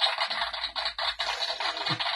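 Glossy trading cards sliding and rubbing against one another as a stack is flipped through in gloved hands, a continuous rapid scratchy rustle.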